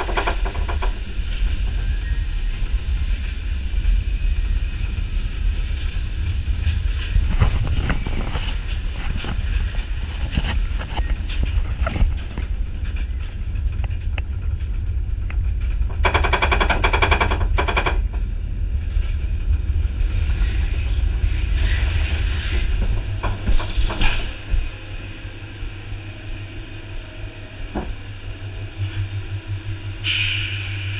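Ride noise heard from aboard a log flume boat: a steady low rumble with clattering as the boat runs along its course, a burst of rapid rattling about halfway through, then quieter near the end.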